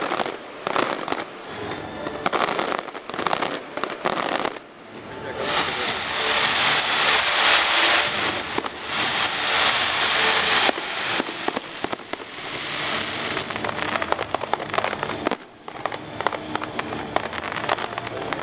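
Fireworks display: a run of sharp bangs and crackles, then from about five seconds in a loud, continuous hiss of firework fountains that cuts off suddenly near the middle. Rapid crackling bangs follow.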